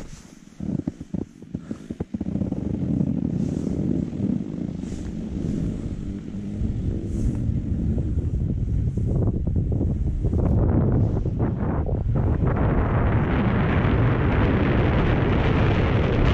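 Wind buffeting the microphone of a camera carried down a ski slope, over the hiss of sliding on snow, after a few knocks in the first two seconds. The rumble builds steadily and turns into a louder, brighter rush about twelve seconds in.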